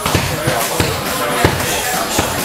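Repeated sharp thuds of strikes landing during MMA training, about eight in two seconds and unevenly spaced, over a steady background of voices and gym room noise.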